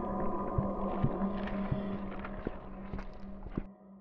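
Cinematic intro sound effects of rock cracking and crumbling: scattered knocks and crackles over a steady low hum. They fade out shortly before the end.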